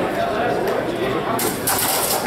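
Indistinct voices of people talking in a large hall, with a short hissing noise over them in the last half second or so.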